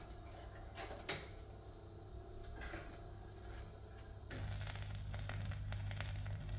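Wurlitzer 1800 jukebox's record-changer mechanism working, with clicks and clunks as it loads a 45 rpm record. About four seconds in, the stylus sets down and the lead-in groove crackles over a low steady hum from the amplifier.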